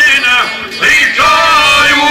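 Live izvorna folk song: men's voices singing through microphones over violin accompaniment, with a brief break about half a second in before the singing picks up again.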